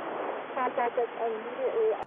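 A fighter pilot's intercept call over aviation radio on the 121.5 MHz guard frequency, telling an aircraft to make contact. The voice is thin and narrow, with steady radio hiss behind it.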